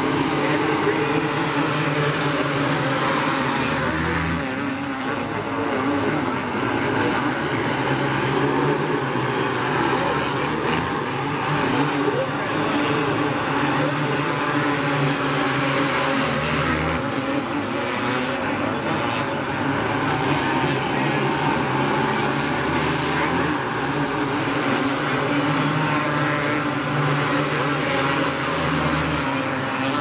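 A pack of outlaw karts, small winged dirt-track sprint karts, racing at speed, their engines running together in a steady, unbroken din.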